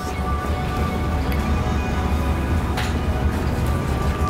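Background music with a steady, pulsing bass line and sustained tones above it.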